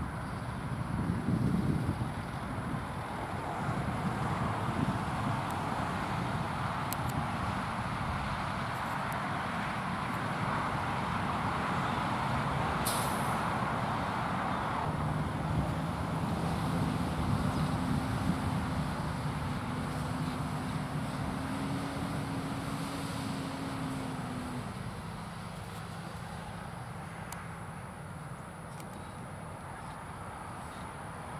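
Bucket truck's engine running as it drives: a low, steady drone under a broad hiss, easing off about 25 seconds in. A single sharp click sounds near the middle.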